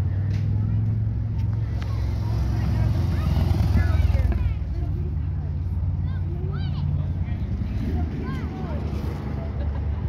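A car engine idling with a steady low running sound, growing louder for a couple of seconds around two to four seconds in. Faint voices of people nearby sound over it.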